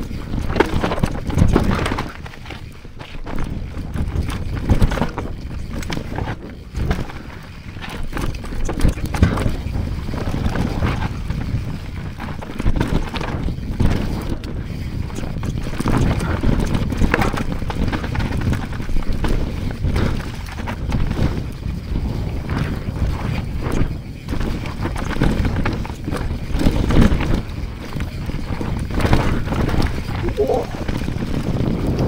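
Mountain bike descending a rough dirt trail at speed: tyres on dirt and roots, with the bike rattling and knocking over bumps, irregularly and continuously, over a low rumble of wind on the microphone.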